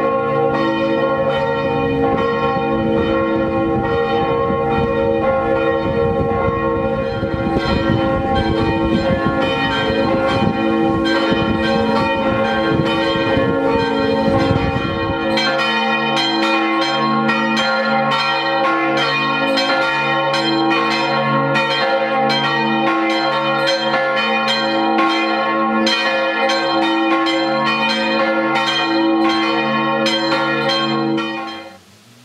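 Large church bells ringing continuously in the tower, stroke after stroke, with their deep tones sustained and overlapping. The bells are rung by hand with a rope. A low rumble lies under the first half and cuts off abruptly about halfway through.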